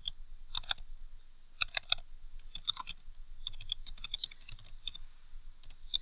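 Computer keyboard being typed on: short runs of key clicks with brief pauses between them.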